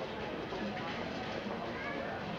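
Busy room chatter: many overlapping voices of children and adults talking at once, none clear enough to make out, with a high-pitched child's voice standing out.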